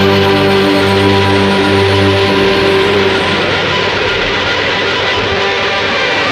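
Loud rock music with electric guitar, the band holding a dense, sustained chord; the low bass notes stop about two seconds in.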